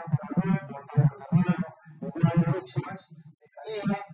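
A man speaking Spanish into a handheld microphone, in continuous phrases with a brief pause about three seconds in.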